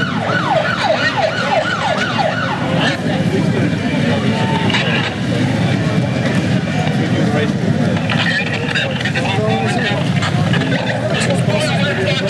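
An emergency vehicle siren in a fast yelp, quick falling whoops about four a second, that stops about a second in. Loud crowd voices and street noise run underneath.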